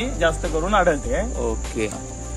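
Crickets trilling steadily in a high pitch, under men's voices talking.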